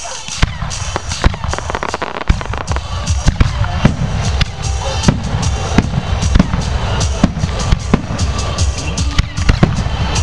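Fireworks display: a rapid, irregular series of sharp bangs and crackles from bursting shells and ground effects, over a steady low rumble that sets in about two seconds in.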